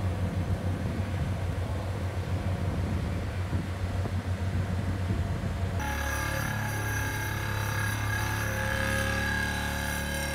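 Heavy diesel construction machinery running, a rough, fluctuating low rumble. About six seconds in, this gives way abruptly to a steady hum of several fixed tones from a pile-driving rig's vibratory hammer driving steel sheet piles.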